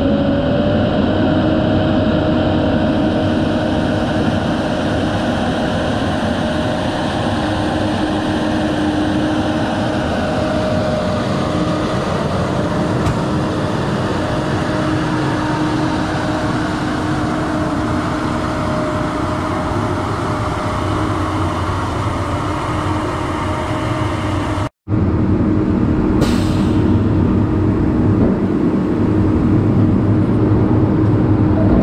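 Diesel engine of a loaded log truck running with a steady drone, heard close to the camera. The sound drops out for an instant about 25 seconds in.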